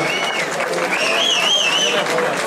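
Audience applauding after a song ends, with a warbling whistle from the crowd about a second in.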